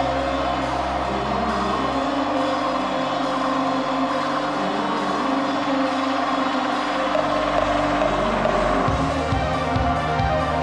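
A rock band recording playing, with drum kit, sustained chords and bass. The bass line shifts about two seconds in and again near the end.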